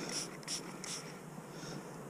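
A toothbrush scrubbing a muddy bronze knife handle in a wet palm: a few short scratchy brushing strokes in the first second, then only faint rubbing.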